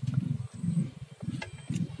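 Close mouth sounds of a man eating soft, creamy durian flesh: irregular low chewing noise, with a couple of small clicks in the second half.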